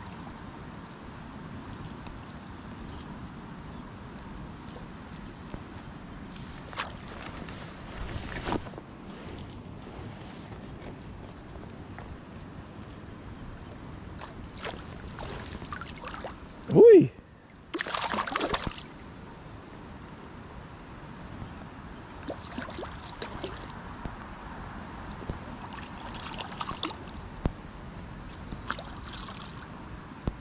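Steady rush of creek water flowing past a wading angler, with scattered sharp clicks and splashes. About two-thirds of the way in comes a short, loud sound that falls steeply in pitch, followed at once by a second-long burst of hiss or splash.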